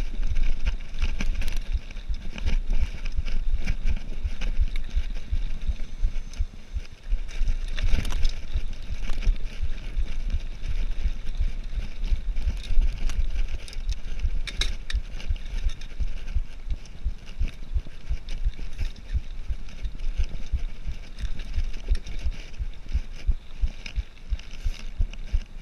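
Cannondale Trail 7 mountain bike rolling over a dirt and gravel trail: tyres crunching and the bike rattling and clattering over the bumps, with a low rumble underneath.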